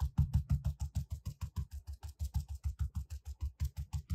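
Stencil brush pounced rapidly and evenly onto a fabric-backed interfacing stencil on a worktable, about seven dull taps a second, dabbing acrylic paint through the stencil.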